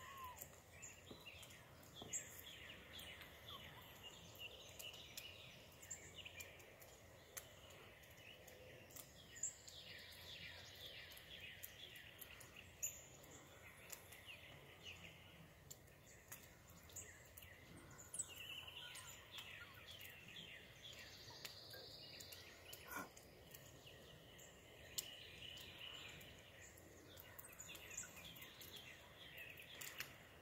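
Faint outdoor ambience with small birds chirping and trilling on and off, and a few soft clicks.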